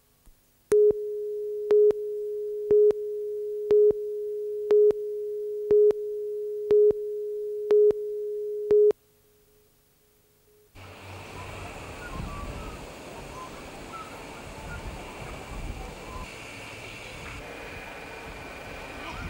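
Electronic line-up or countdown tone between news tapes: a steady tone at one pitch runs for about eight seconds and jumps to a louder beep once a second, nine beeps in all, each with a click, then cuts off suddenly. A couple of seconds later a steady background hiss of the next item's sound begins.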